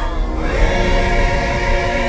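A choir singing long held notes in a film-score style soundtrack, over a deep low bass underneath.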